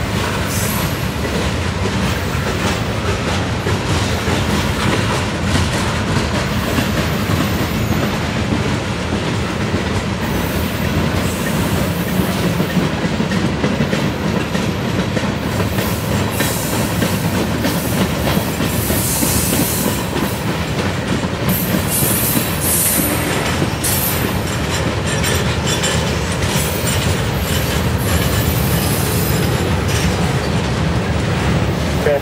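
Freight cars of a mixed CN freight train (tank cars, steel-coil cars, boxcars) rolling past close by: a steady rumble with the clickety-clack of wheels over rail joints. In the second half come brief high-pitched bursts of wheel squeal.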